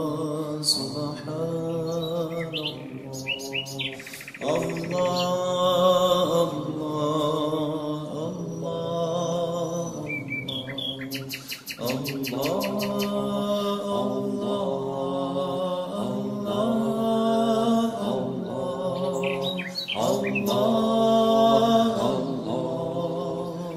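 Songbirds chirping, with rapid trills about four seconds in, near the middle and near the end, over a slow chanted Islamic dhikr sung in long held notes.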